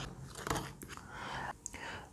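Quiet room tone with a few faint small clicks and rustles of handling, heard about half a second in and again near the end.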